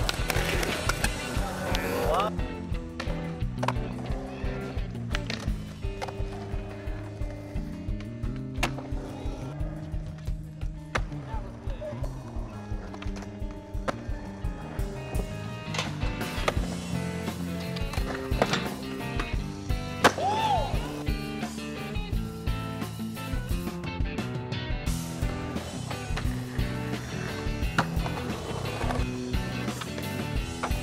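Music with a steady beat over skateboarding on concrete: wheels rolling, trucks grinding on ledges and coping, and boards clacking down on landings. A sharp crack stands out about twenty seconds in.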